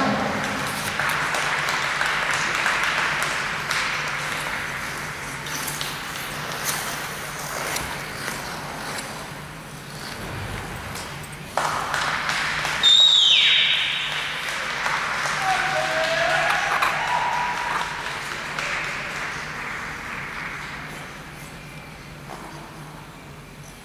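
Scattered audience applause in an ice rink, dying away over about ten seconds. About thirteen seconds in, a loud high whistle cuts in, followed by a brief call from the stands.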